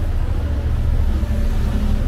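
Steady low rumble of city street traffic, with a faint hum coming in partway through.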